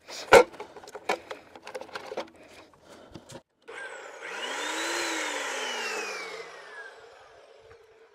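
Metal clanks and knocks of a folding rolling saw stand being set up during the first three seconds, the loudest about half a second in. Then the Evolution S355MCS 14-inch metal-cutting chop saw's motor runs briefly, its whine rising to a peak and then falling away over about three seconds as it winds down.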